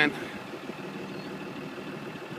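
New Holland LW110 wheel loader's diesel engine idling steadily, with a faint steady high whine above the engine hum.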